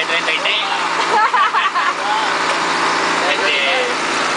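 Old, rickety passenger bus driving along a road, its engine running steadily with road and cabin noise heard from inside the bus.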